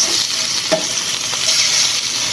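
Tocino (sweet cured pork) sizzling as it fries in a pan, while metal tongs stir and turn the pieces, with one sharp click a little under a second in.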